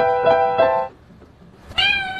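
Digital piano keys pressed by a cat's paws, the same few notes struck over and over about three times a second, stopping about a second in. Near the end a cat gives one meow.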